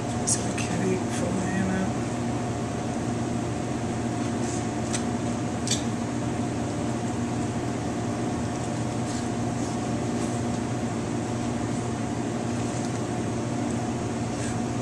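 Steady mechanical hum of kitchen machinery, with a few faint clicks of a knife against a cutting board as a flounder is filleted.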